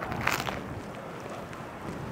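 Street background: a steady low rumble of wind on the microphone and road traffic, with one brief noise about a third of a second in.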